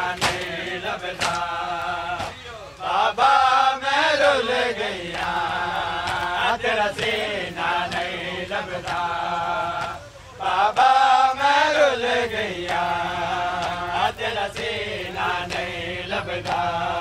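A crowd of men chanting a noha, a Shia mourning lament, in unison, with sharp slaps of hands striking chests (matam) at intervals. The voices swell and rise in pitch about three to four seconds in, and again about eleven seconds in.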